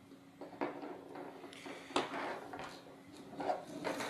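A small screwdriver and an ultrasonic sensor in its plastic mount being handled and put down on a tabletop: a few light clicks and knocks with some rubbing, the sharpest knock about two seconds in.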